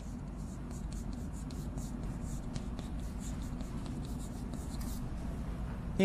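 Chalk scratching and tapping on a blackboard as a line of Chinese characters is written, many short strokes in quick succession that stop about a second before the end.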